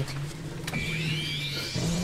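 A mechanical whirring sound effect over a steady low drone. A higher whine comes in just under a second in and rises in pitch, like a small electric motor or servo.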